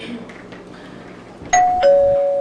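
Doorbell chiming a two-note ding-dong about one and a half seconds in, the second note lower and held.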